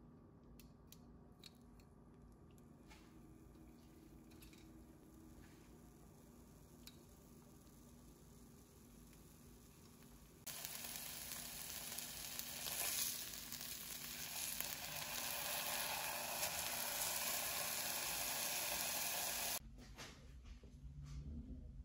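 Two seasoned beef steaks sizzling in a nonstick frying pan: a steady frying hiss that starts suddenly about halfway through and cuts off just before the end. Before it, only faint room sound with a few small clicks.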